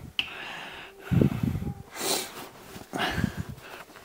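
A person's breathing: three short, noisy breaths, about a second apart, with a click just after the start.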